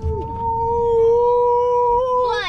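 A long, steady, high held note with one strong overtone, over a low rumble.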